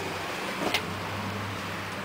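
A steady low hum under the truck's hood, with one faint click about three-quarters of a second in.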